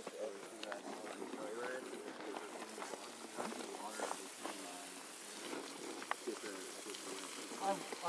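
Garden hose spraying water onto a pile of rolled fibre logs, a steady hiss, with several people talking in the background.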